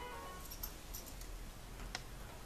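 Faint small ticks and clicks of a metal zipper slider being worked onto the end of a continuous zipper tape, with one sharper click near the end.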